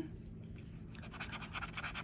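A scratch-off lottery ticket being scratched with a bottle-opener-shaped scratcher tool, a fast run of short scraping strokes starting about a second in.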